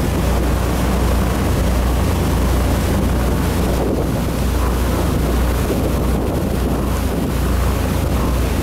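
Motorboat running at speed: a steady low engine drone under the rush of its churning wake, with wind buffeting the microphone.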